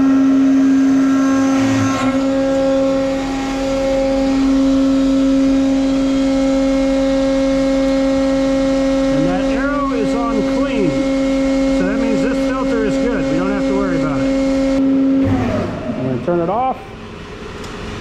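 Electric motor of a printing press's hydraulic pump unit running with a steady, even hum, then shutting off suddenly about fifteen seconds in.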